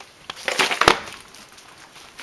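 A quick cluster of sharp knocks and clatters, the loudest just before the middle, then a quieter stretch: hard objects knocking together as things are handled.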